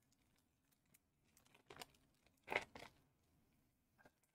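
Foil wrapper of a Pokémon booster pack crinkling and tearing as fingers work it open, in a few short crackles a little before and after the middle; the rest is near silence.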